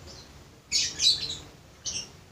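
Small birds chirping: a cluster of high chirps about two-thirds of a second in, and another short chirp near the end.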